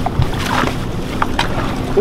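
Outboard motor running steadily at trolling speed, a low, even hum.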